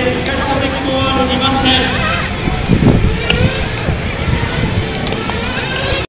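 People talking in the background over steady outdoor noise, with a brief low rumble about three seconds in.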